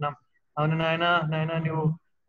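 A man's voice speaking Telugu in a drawn-out, chant-like way, from about half a second in until just before the end.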